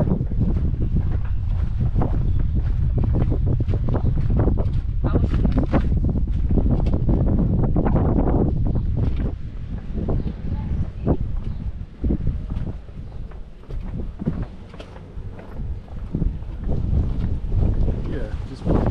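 Wind buffeting the microphone as a low rumble, heavy for about the first half and then easing into gusts.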